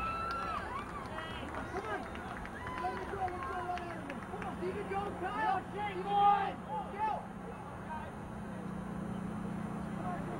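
Distant, overlapping shouts and calls from players and spectators around a soccer field, none of them clear words, loudest about six seconds in. A steady low hum comes in about four seconds in.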